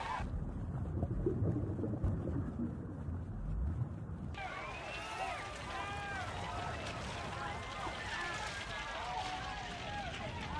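A muffled, underwater-sounding rumble for about four seconds, then many overlapping voices crying out and shouting over water: people in the sea calling for help after the ship went down.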